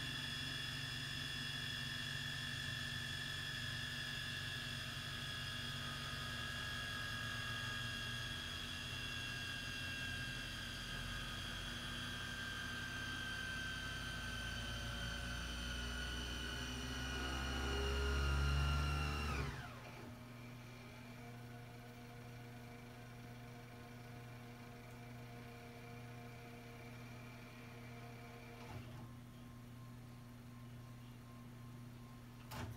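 Mitsubishi VCR fast-forwarding a VHS tape: a high whine of several tones from the spinning reels and motor that slowly falls in pitch, with a low rumble swelling shortly before the whine drops steeply about 19 seconds in. The deck then winds on at a quieter hum as the tape nears its end, with a soft click shortly before the end.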